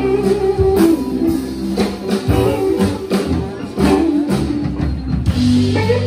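Live blues band playing an instrumental passage: electric guitar over electric bass and drum kit, with a steady beat of about two drum strokes a second.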